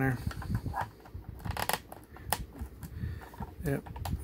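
Irregular hard-plastic clicks and taps as an action figure is pressed onto the short foot pegs of a plastic toy tank and worked on and off them by hand.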